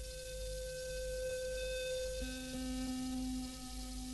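Sustained, near-pure keyboard tones in a quiet passage of a live progressive rock set recorded straight from the mixing desk: one high note is held, then a little past halfway a lower note takes over with a fainter tone above it. A low hum runs underneath.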